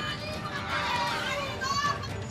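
A group of protesters, many of them women, shouting together in raised, high-pitched voices.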